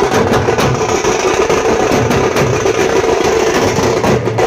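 Street band drumming loudly on bass drums and snare drums, mixed with the noise of passing traffic.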